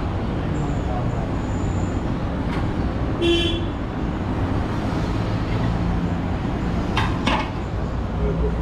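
Busy street traffic rumbling steadily under background voices, with a short vehicle horn toot about three seconds in. Near the end come two sharp clinks.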